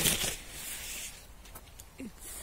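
Persimmon tree leaves and twigs rustling as they brush past the phone moving through the branches: a loud rustle at the start, then softer rustling with a few light clicks.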